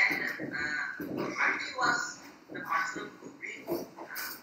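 A man talking in a continuous run of speech, lecturing over a video call.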